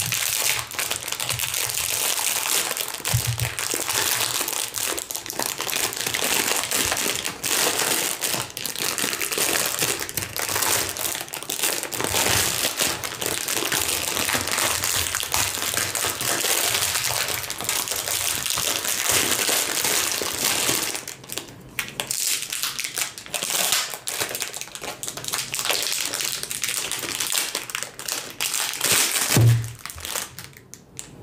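Clear cellophane candy-apple bag crinkling and crackling continuously as it is handled and pulled open. The crinkling turns more broken, in short spurts, about two-thirds of the way through.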